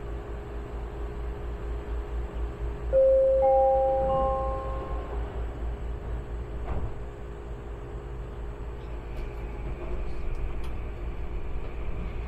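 SkyTrain car's onboard announcement chime: three rising notes about three seconds in, each ringing on as the next sounds, over the steady rumble of the train running through the tunnel, heard inside the car.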